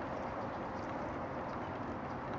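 Steady, faint background rush with no distinct sounds.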